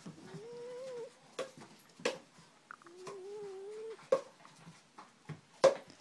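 A Boston terrier giving two drawn-out whining yowls, each about a second long and rising slightly in pitch. Between and after them come a few sharp knocks, the loudest near the end.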